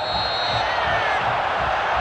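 Stadium crowd noise, a dense steady roar rising in reaction to a foul on the pitch. A short, shrill referee's whistle blast sounds right at the start.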